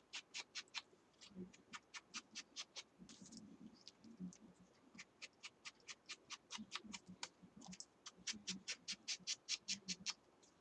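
Quick, even scratching or rubbing strokes, about five a second, in runs of one to two seconds with short pauses between.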